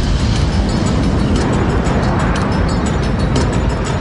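A jet airliner passing low overhead: a loud, steady rush of engine noise, heavy in the low end, with background music beneath it.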